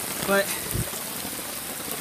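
Heavy rain falling steadily onto flooded pavement and standing water, a continuous even hiss. A brief low thump comes about three-quarters of a second in.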